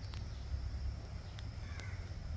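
A bird gives one short harsh call near the end, over a steady low rumble on the microphone.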